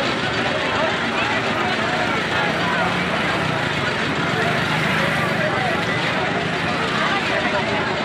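Crowd babble: many people talking at once in a large outdoor crowd, a steady mass of overlapping voices with no single speaker standing out.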